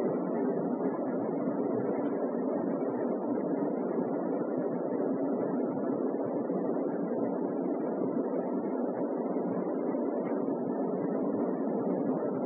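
Steady, even room noise with no speech: a continuous rushing hum with no rhythm or change.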